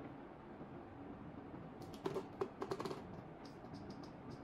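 A quick run of hard plastic clicks and taps as a TV remote control is set down on a coffee table, then a few lighter clicks near the end.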